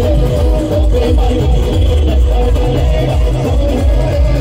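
Loud amplified band music blasting from a DJ truck's loudspeaker stacks: a heavy, pounding bass beat under a sustained electronic keyboard melody.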